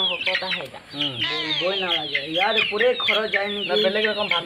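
Domestic chickens clucking, with chicks giving many short, high, falling peeps throughout.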